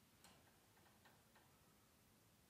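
Near silence: room tone with four faint, short clicks.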